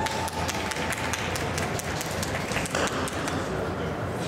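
An irregular run of sharp clicks, roughly five a second, over the steady low hum of a large ice-rink hall.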